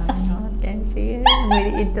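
Two women laughing, with a burst of high-pitched, squealing laughter in the second half.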